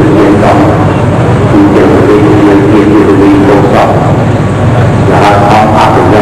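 An elderly man speaking Khmer into a microphone, loud, over a constant noisy hiss.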